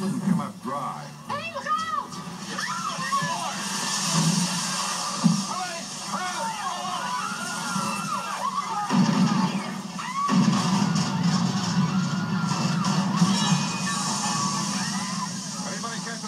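Film soundtrack played back through a TV speaker: music mixed with background voices, growing fuller about nine seconds in.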